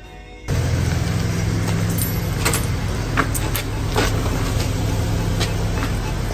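Steady low hum of a motor vehicle engine running close by, with street noise and scattered sharp knocks and clicks. It cuts in suddenly about half a second in.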